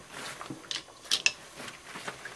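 Paintbrush being wiped down by hand, the towel giving a few brief, faint rustles around the middle.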